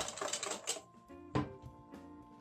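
Wire whisk beating rapidly against a stainless steel bowl, whipping egg and oil for mayonnaise, stopping just under a second in. Background music with plucked notes follows, with a single clank about halfway through.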